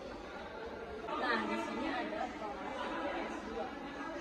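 Background chatter: several indistinct voices talking, with no clear words.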